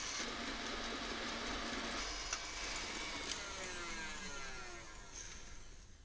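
KitchenAid stand mixer running on high, its wire whisk beating egg yolks and hot sugar syrup in a glass bowl for French buttercream. It is a steady whirring that eases off somewhat near the end.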